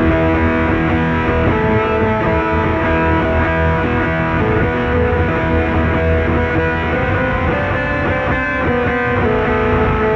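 Guitar music: a guitar playing held, overlapping notes at a steady loudness.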